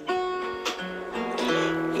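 Acoustic guitar strumming chords in a slow country ballad, a few strokes in the short pause between sung lines.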